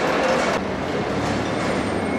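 Steady mechanical rumble and noise of a busy wholesale produce market hall, with no speech; the higher hiss drops back about half a second in.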